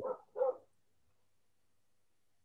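A man's voice finishing a word, then one short voiced sound about half a second in, followed by dead silence.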